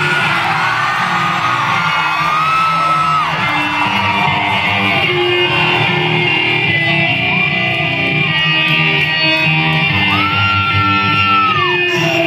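Live rock band playing loud: electric guitar and bass over drums, with long held high notes that slide up, hold and fall away, the loudest of them near the end.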